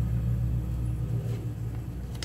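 A steady low mechanical rumble with a hum.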